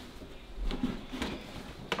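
Wooden nesting box being lifted and handled: a few light knocks and dull thuds, then a sharp click near the end.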